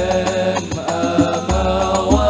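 Al Banjari ensemble: several male voices singing an Arabic devotional song in unison over deep frame-drum strokes, one about one and a half seconds in.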